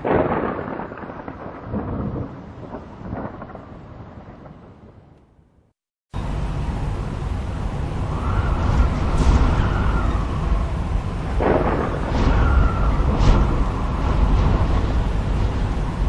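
Cartoon sound effects: a thunderclap as lightning strikes, rumbling and fading over about five seconds. After a brief break, a tornado's wind starts up, steady and loud with a deep rumble and a few short whooshes.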